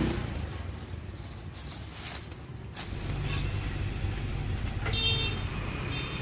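Street traffic: motorbike engines running by, with a short high horn beep near the end.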